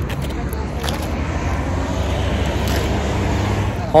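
Road traffic on a wide city street, a steady rumble that swells about two seconds in, with wind buffeting the microphone.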